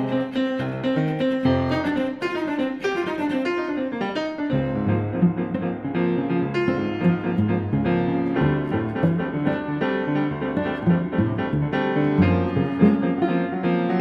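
Grand piano playing a fast passage. A run of notes steps down through the middle register a few seconds in, and from there on the playing moves into repeated low chords.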